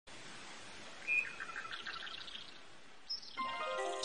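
Birds chirping over a faint steady hiss: a short whistle about a second in, then a quick run of repeated chirps, and another high chirp near three seconds. Soft background music with held notes comes in near the end.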